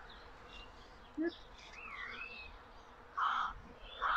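Faint outdoor birdsong: a single whistled call that rises and falls a little before two seconds in, and a short call about three seconds in.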